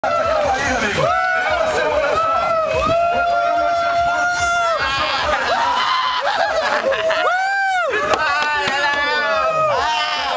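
A crowd of people shouting and cheering in celebration, with a long drawn-out yell held for about four seconds starting a second in, and another short rising-and-falling shout near the end.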